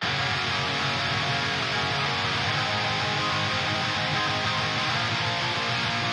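Recorded electric guitar part playing back at a steady level, a continuous riff.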